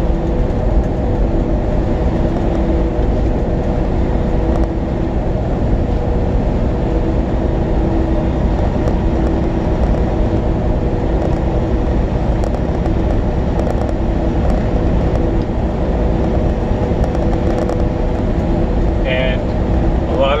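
Cab noise of a moving semi-truck: a loud, steady low rumble of engine and road with a constant hum over it.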